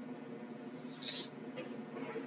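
A pause in a lecture recording: faint steady background hum, with one brief soft hiss about a second in.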